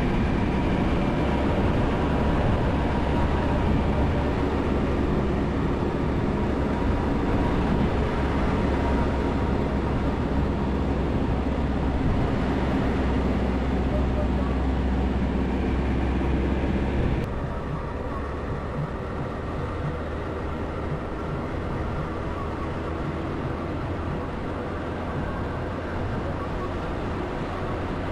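Vehicle driving on a mountain road, a steady mix of engine and road noise with low wind rumble. About two-thirds of the way through, the sound drops slightly and turns duller.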